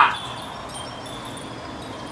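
Light, scattered high chiming tones, short and intermittent, over steady outdoor background noise.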